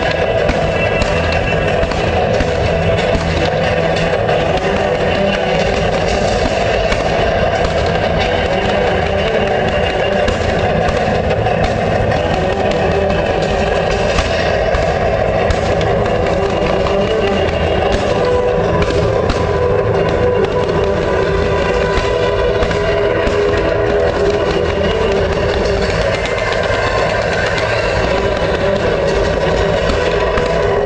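A fireworks display: a dense, steady mix of crackling and popping, with music playing loudly over it.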